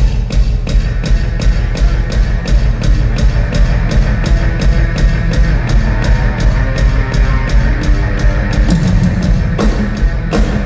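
Live rock band playing loud: a drum kit keeps a steady, driving beat under electric guitar and a heavy bass end.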